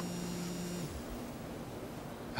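Mobile phone vibrating: a low, steady buzz lasting about a second, then a fainter hum.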